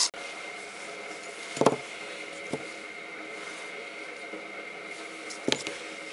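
Small parts and tools being handled on a workbench: a sharp click about two seconds in, a fainter one soon after, and a couple of quick clicks near the end, over a steady background hum with a faint high whine.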